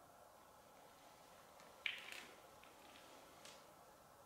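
Near silence with faint room hiss, broken about two seconds in by a single sharp knock with a short trail of small crackles, and a fainter click about a second and a half later.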